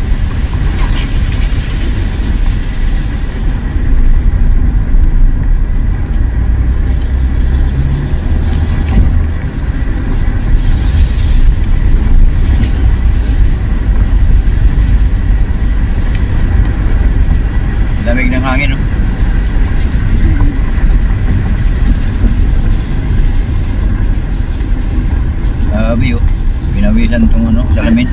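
Car driving, heard from inside the cabin: a steady low rumble of engine and tyres on a wet concrete road.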